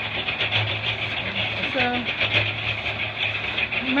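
A machine engine running steadily, a low hum that swells and fades under a constant hiss.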